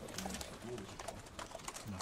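A man's voice asking a question, faint and off-microphone, in short low-pitched phrases. Sharp clicks of press camera shutters are scattered through it.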